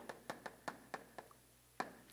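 Chalk writing on a chalkboard: a faint run of short, sharp, irregular taps as the stick strikes the board with each stroke.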